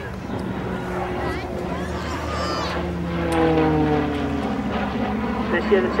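Short Tucano T1's Garrett turboprop engine droning steadily as the aircraft flies by, with its pitch sinking about three seconds in as it passes.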